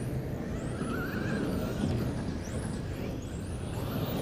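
Electric RC touring cars with modified-class brushless motors racing on a carpet track, their high-pitched motor whines rising and falling as they accelerate and brake through the corners, over a steady low rumble.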